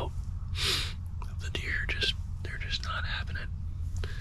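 A man whispering to the camera in short phrases, with a breathy rush of air about half a second in.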